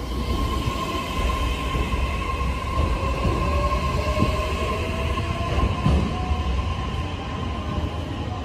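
Electric commuter train pulling out of the platform and accelerating past, with a rumble of wheels on rail. Over the rumble runs a steady whine and a second, slowly rising whine from the traction motors as it gathers speed.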